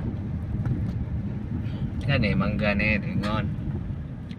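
Steady low rumble of a car driving, heard from inside the cabin, with a person's voice coming in about two seconds in for just over a second.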